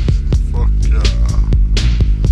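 Slowed-down, chopped-and-screwed hip hop beat: a heavy, deep bass line under sharp drum hits every fraction of a second.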